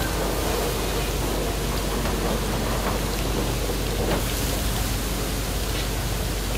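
Battered Korean fritters (twigim) deep-frying in a large steel vat of hot oil: a steady, rain-like sizzle of bubbling oil.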